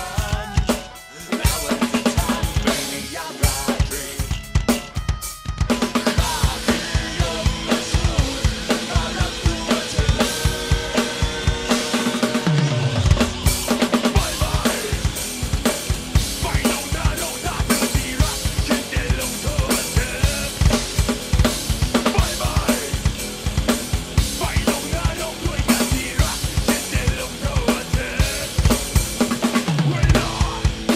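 Roland electronic drum kit played in a driving rock beat, with dense bass drum, snare and cymbal hits and fills, over the song's backing track. A falling low glide is heard about 12 seconds in.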